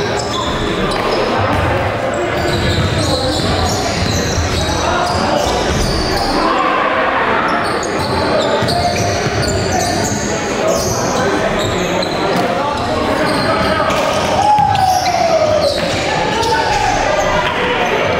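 Live basketball game sound in a reverberant gymnasium: the ball bouncing on the hardwood court amid players' voices and calls.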